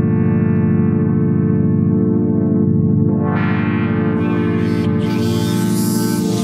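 A big synthesizer pad chord held steadily, played from a Lumatone keyboard. Its tone opens up and grows brighter about three seconds in, and much brighter again near five seconds, as keys set up as continuous controllers for morph, resonance and filter cutoff are pressed.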